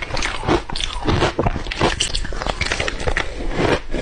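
Close-miked crunching and chewing of crushed matcha ice, a rapid run of crisp crunches several times a second.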